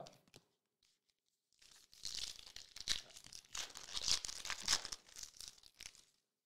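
A foil trading-card pack wrapper being torn open and crinkled: a dense, crackling rustle that starts about a second and a half in.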